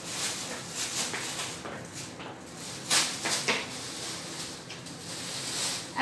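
Plastic glove crinkling and rustling as it is turned inside out over a removed wound dressing, with a cluster of sharper crackles about three seconds in.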